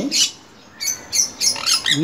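Cockatiel chicks in a nest box giving short, hissy calls: two at the start, then a quick run of several after a brief pause.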